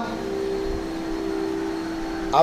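A steady drone of a few held notes, unchanged throughout, with a low hum beneath.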